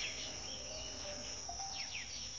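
Insects chirring steadily at a high pitch, with a few faint short falling chirps.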